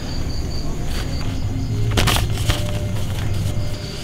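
A sheet of paper rustling as it is unfolded in front of a microphone, with two sharp crackles about halfway through. Crickets chirp steadily in the background.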